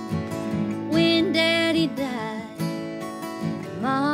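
Two acoustic guitars playing a slow country song together, with sustained chords and picked notes.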